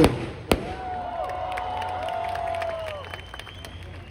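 Stage fireworks going off: a single sharp bang about half a second in, then about two seconds of whistling tones mixed with crackling that fade out.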